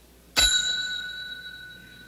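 A front-desk service bell struck once about half a second in, its bright ring fading away over about two seconds.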